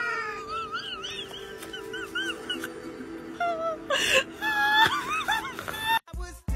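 A cat giving a string of short, high mews, each rising and falling in pitch, over background music.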